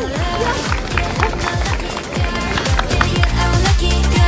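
Electronic dance-pop music with a steady beat and deep, falling bass-drum hits.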